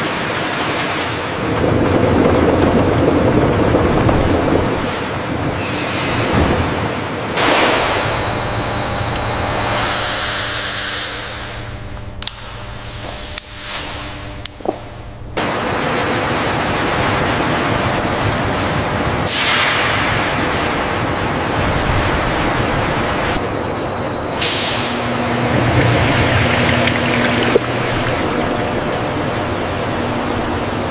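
Processing machinery running with grapes tumbling onto a stainless conveyor. About halfway in, the sound changes abruptly to a heavy stream of red grape must pouring and splashing into an open stainless-steel tank, a steady rushing noise.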